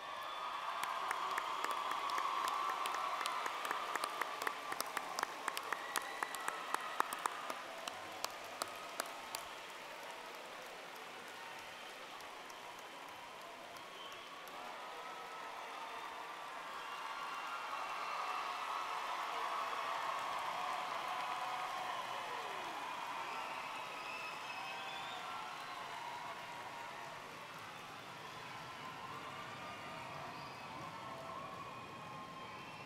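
Large crowd applauding and cheering. For the first nine seconds or so, sharp individual claps stand out close by; after that the sound settles into a steadier din of clapping and voices, swelling again about two-thirds of the way through.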